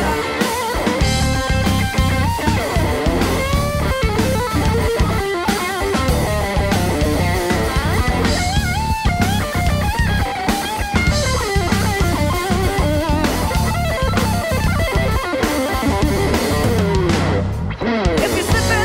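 A live rock band plays an instrumental passage: an electric guitar lead plays a bending melodic line over bass guitar and a Pearl drum kit.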